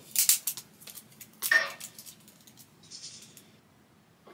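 Retractable tape measure being handled: a quick run of clicks and rattles as the blade is pulled out, another click a second or so later, and a short rustle as it is wrapped around the waist.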